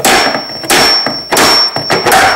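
Claw hammer striking a tool to drive the lower door hinge pin out of a Chevy S-10 door hinge: four metal-on-metal blows, about one every two-thirds of a second, with a high ring that carries between them.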